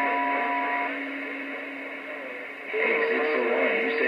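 Stryker SR-955HP radio receiving over the air: band-limited static hiss through its speaker, with several steady whistling tones from other carriers that stop about a second in. A new, lower steady whistle comes in near the three-second mark as the signal rises.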